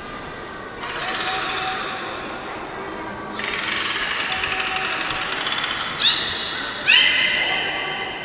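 Beluga whale vocalizing: high squealing calls with a rapid buzzing pulse, then two sharp chirps about six and seven seconds in.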